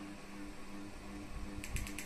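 Plastic remote-control buttons clicking several times in quick succession near the end, as the projector's file menu is scrolled, over a low steady hum.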